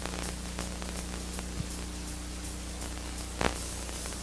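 Steady hiss and low electrical hum with a few faint clicks, about three seconds apart: background noise of an old videotaped broadcast recording.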